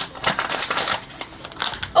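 Plastic blind-bag packaging crinkling and tearing as it is opened by hand, a run of irregular rustles and crackles.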